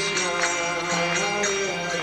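A kirtan: a man's voice chanting a devotional mantra into a microphone over sustained harmonium notes. Small hand cymbals ring in a steady rhythm, about three strikes a second.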